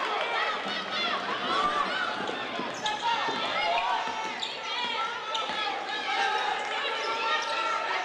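Basketball game court sound: a ball bouncing on the hardwood floor, sneakers squeaking as players run and cut, and voices calling out around the court.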